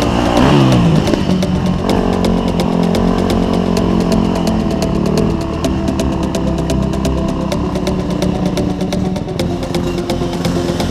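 Yamaha YZ250F dirt bike's four-stroke single-cylinder engine running. The revs fall sharply about half a second in, then hold fairly steady.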